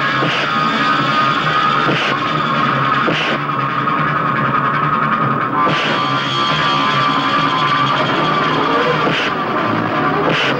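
Rock-style film fight music with guitar, steady and loud throughout, with about five sharp hits of punch sound effects spread across it.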